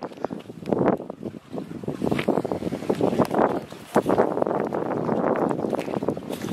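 Wind gusting over the camera microphone, an uneven rushing noise that rises and falls.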